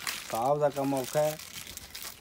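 A man's voice speaking one short phrase, about a second long, while cloth rustles as a shirt is grabbed and handled.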